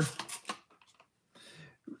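Squeeze bottle adding water to a plastic cup: a few faint clicks, then a short soft hiss about one and a half seconds in.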